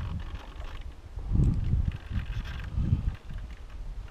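Wind buffeting the microphone on an exposed hillside, in irregular gusts with low rumbling surges about a second and a half in and again near three seconds.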